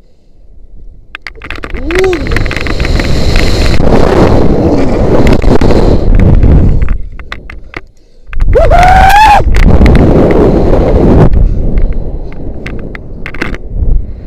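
Wind rushing over a head-mounted action camera's microphone during a rope jump, building from about a second in as he falls. It drops out briefly about eight seconds in, then surges again with a short rising-and-falling whine and eases off as he swings on the rope.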